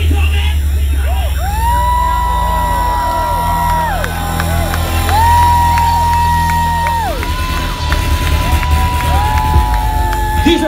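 Live band music in an instrumental stretch: a heavy, steady bass drone that weakens about seven seconds in, under a keyboard synth line that slides up into long held notes and drops away, several times over. A crowd cheers underneath.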